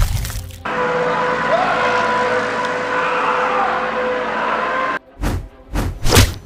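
Film-trailer sound design. The tail of a heavy impact as a man is slammed to the floor, then a dense, steady drone with faint held tones for about four seconds that cuts off suddenly. Two sharp whooshing hits follow near the end.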